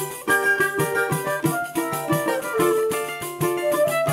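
Choro ensemble playing: transverse flute and clarinet carry the melody over a strummed cavaquinho and a pandeiro keeping a steady rhythm.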